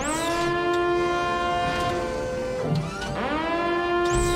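Shipboard missile launcher machinery whining as it spins up: a rising whine that levels off into a steady tone, then drops briefly about three seconds in and rises again.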